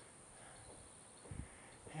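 Quiet outdoor ambience: a faint steady high-pitched drone, with a brief low thump about one and a half seconds in.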